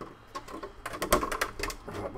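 Plastic body shell of a Traxxas TRX-4 RC crawler clicking and knocking against the chassis and bumper as it is pressed down onto its mounts, a quick run of small hard clicks.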